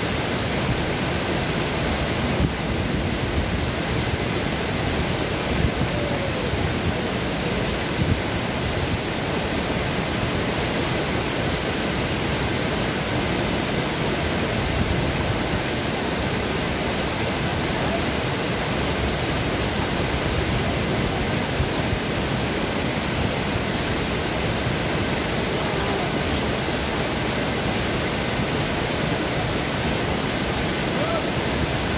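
Small waterfall pouring over a stone weir into a pool: a steady, even rush of falling water.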